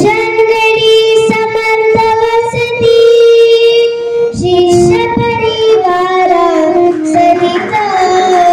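A young girl singing a devotional kirtan song (pada) into a microphone, in long held notes that slide and step from one pitch to the next.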